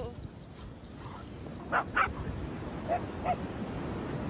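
A dog giving short barks: two in quick succession about two seconds in, then two fainter ones about a second later.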